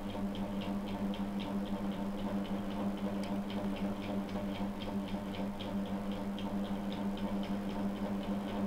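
A steady low hum with a fast, even ticking over it, about four ticks a second.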